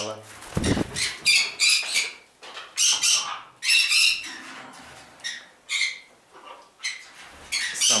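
Pet parrots screeching, with many short, shrill calls one after another and a low thump about half a second in. The uploader puts the noise down to a newly arrived group of green-cheeked conures.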